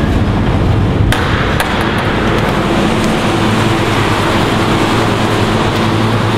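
Steady loud running noise of a cold store's refrigeration plant. About a second in comes one sharp metallic clunk from the insulated cold-room door's lever latch.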